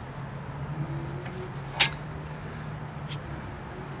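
Steel-backed disc brake pads clicking as they are handled, one sharp click a little under two seconds in and a fainter one about three seconds in, over a low steady hum.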